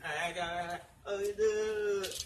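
A man singing two short phrases with a brief pause between them, the second ending on one long held note.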